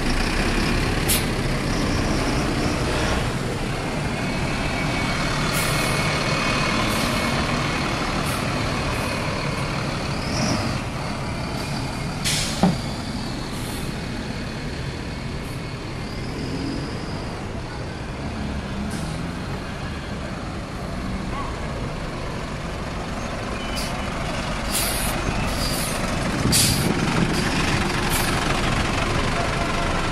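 City buses pulling away and driving past one after another, their engines making a steady low rumble. Short sharp hisses, typical of air brakes releasing, come every few seconds early on and in a cluster near the end.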